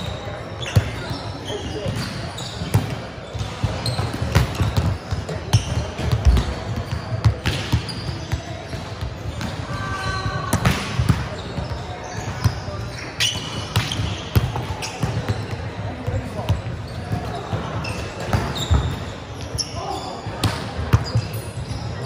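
Volleyballs being hit and bouncing on a hardwood court: irregular sharp slaps and thuds echoing in a large sports hall, with players' voices in the background.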